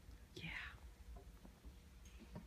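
A faint, breathy whispered voice sweeping down in pitch about half a second in, over a low steady hum.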